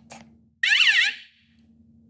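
A short electronic warbling alarm tone, its pitch sweeping quickly up and down, starting suddenly a little over half a second in and fading after about half a second: the alarm sound of a prop lie detector.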